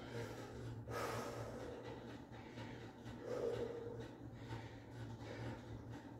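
A man breathing slowly and deeply during a stretch, with a soft breath rush about a second in. A faint steady low hum runs underneath.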